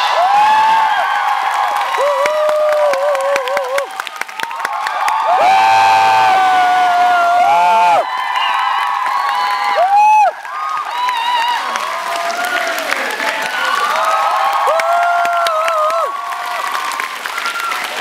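Audience applauding and cheering at the end of a dance performance. Dense clapping runs under many long, high shouts and screams from the crowd.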